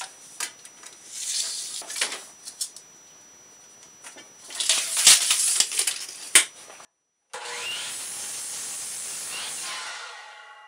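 A wooden board being handled at a miter saw: a tape measure drawn along it and the wood sliding, rubbing and knocking on the saw table, with a few sharp knocks. After a brief dropout, a steady hiss follows for the last few seconds.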